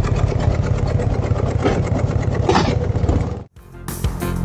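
Harley-Davidson Road King's V-twin engine idling with a steady, even pulse. It cuts off abruptly about three and a half seconds in, and music starts.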